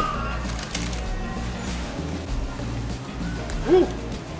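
Background music plays steadily while crusty toasted sourdough garlic bread is bitten and chewed, with faint crunching early on. A short exclaimed "Woo!" comes near the end.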